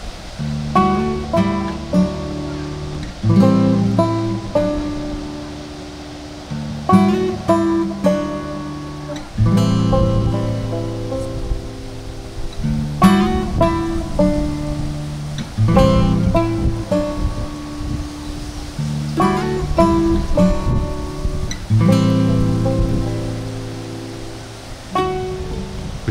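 Background music: acoustic guitar plucking chords and notes in repeated phrases.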